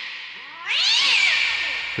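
A cat yowling. The end of one long call fades out, then a second long yowl begins just under a second in, rising and then falling in pitch.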